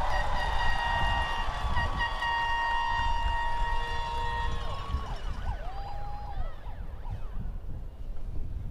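Several air horns held at once by the crowd, blaring high steady tones that slide down and cut out about five seconds in, followed by a few shorter horn blasts and whoops.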